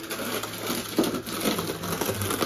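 Close rustling and crackling with irregular small clicks and knocks, from a person moving right past the microphone: clothing and steps.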